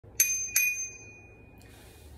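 A bicycle bell rung twice, two bright dings about a third of a second apart, the second ringing on for about a second.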